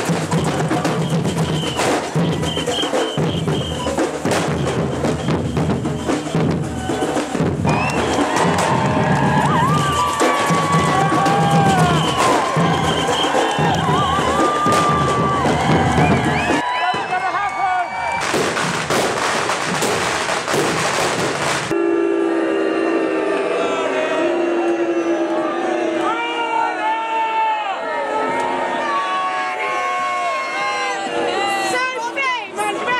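A marching street drum band playing a steady, driving beat over crowd voices. About halfway the drumming stops, followed by a few seconds of dense hissing noise and then crowd voices.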